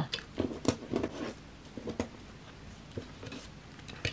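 Paper offcut strips and scraps being gathered up by hand off a cutting mat: faint rustling with a few light clicks and taps, mostly in the first half.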